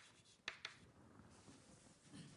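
Faint writing on a board: a few sharp taps near the start and about half a second in, then near silence with room tone.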